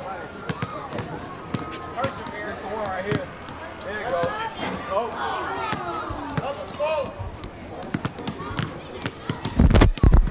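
A basketball bouncing on a court amid several overlapping voices, with scattered sharp knocks. A loud low thump comes near the end.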